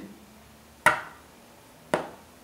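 Two sharp knocks, about a second apart, as a disposable plastic tattoo tube is pressed down against a tabletop to force a grip onto it.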